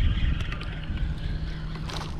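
A hooked crappie splashing at the water's surface as it is pulled up, near the end, over a steady low rumble.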